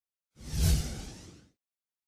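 A single whoosh sound effect with a low rumble beneath it, swelling quickly and then fading away over about a second.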